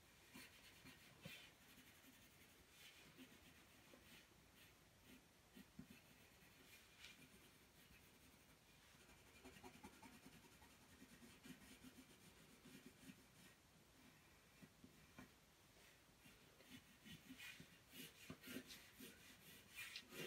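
Faint scratching and light tapping of a watercolour pencil on paper as small circles and marks are drawn, a little busier in the last few seconds.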